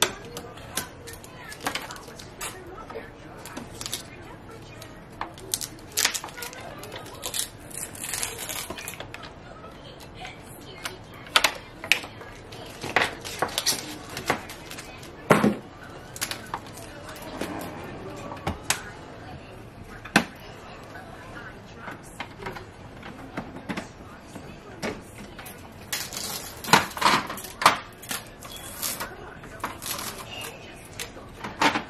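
Hands working inside an Epson EcoTank ET-8550 printer to strip off its packing tape: irregular sharp clicks and knocks of plastic parts with bits of rustling. The loudest clicks come about halfway through and again near the end.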